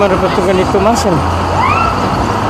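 A man speaking over the steady low hum of an idling bus engine, with a short rising tone about one and a half seconds in.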